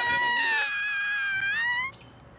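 A high-pitched voice holding one long cry of nearly two seconds, sliding up at the end and cutting off abruptly.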